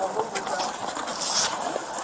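Clothing and gear rubbing against a body-worn camera's microphone as the wearer moves, a scratchy rustle with a louder burst about a second in.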